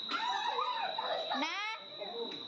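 Children's high-pitched voices calling out and squealing while playing, with a short rising squeal about one and a half seconds in. A steady high-pitched whine runs underneath.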